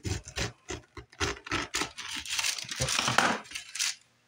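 Kitchen knife cutting the skin off a pineapple: a run of short cutting strokes through the rind, coming closer together and louder in the second half, then stopping just before the end.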